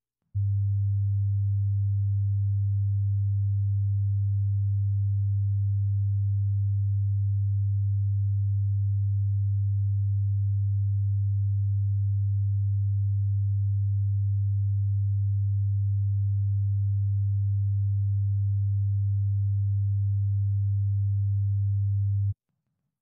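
A loud, steady low-pitched electronic tone, a single pure pitch that switches on abruptly and cuts off abruptly at the end.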